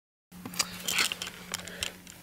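Rustling and light clicks of a thin dash cam power cable and trim being handled by hand in a car's footwell, over a steady low hum. The sound cuts in abruptly a fraction of a second in.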